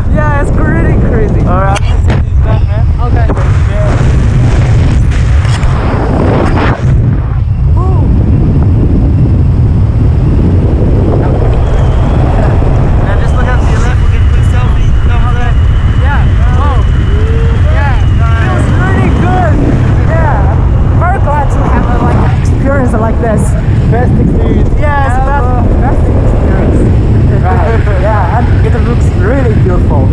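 Wind blasting across the camera microphone during a tandem skydive. The hiss of freefall air cuts out about seven seconds in as the parachute opens, and a heavy buffeting rumble carries on under the canopy. Voices shout and whoop over it.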